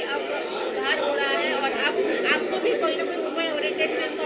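Crowd chatter: several voices talking over one another at once.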